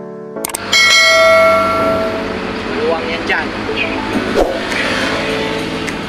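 Subscribe-button animation sound effect: a couple of clicks, then a bright notification bell chime that rings out and fades over about a second and a half. A mix of music and voices follows.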